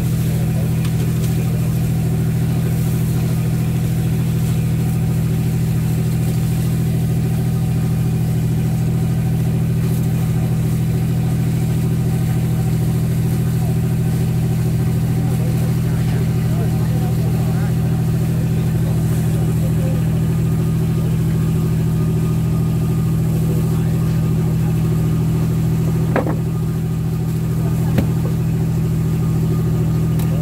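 A fishing boat's engine running steadily, a loud, even low drone. Two short knocks near the end.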